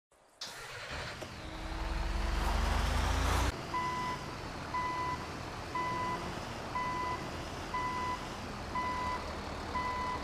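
A motor vehicle engine running and rising in pitch as it revs up, cut off abruptly, then a reversing alarm beeping once a second in short, even beeps.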